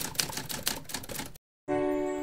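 A rapid run of clicks, typewriter-like, lasting about a second and a half and stopping suddenly. After a short gap a ringing musical chord starts near the end.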